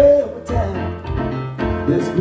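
Electronic keyboard played with a piano sound, chords struck under a man singing live into a microphone.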